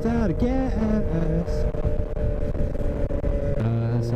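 Sport motorcycle's engine running steadily at cruising speed under heavy wind noise on the microphone. A new, lower engine note comes in near the end.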